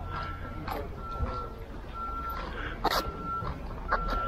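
Electronic beeping repeating at one steady pitch, about once a second, like a vehicle's reversing alarm, with a short sharp sound about three seconds in.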